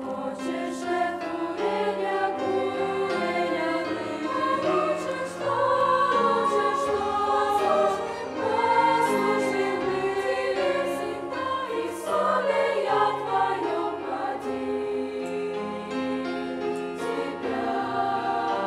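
Mixed choir of young women's and men's voices singing a Christian hymn in sustained, slow-moving chords.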